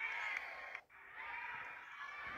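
Basketball shoes squeaking on a hardwood gym floor: many short, overlapping squeals as players run and cut, broken off briefly a little under a second in.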